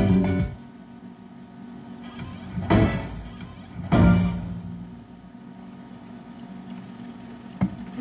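IGT Exotic Island video slot machine sound effects. The guitar spin music stops as the reels settle, then two short, loud chimes about three and four seconds in as the Exotic Island symbols land. Quieter steady game tones follow.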